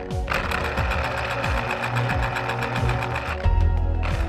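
Electric mixer running steadily, a dense mechanical whirr, as a cake batter is mixed, over background music.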